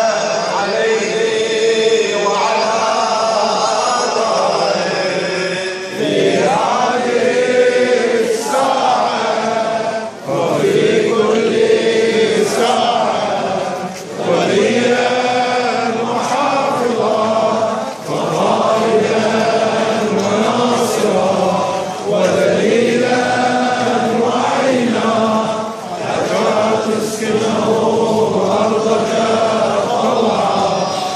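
A crowd of mourners chanting in unison, the same slogan repeated in phrases, with a short break about every four seconds.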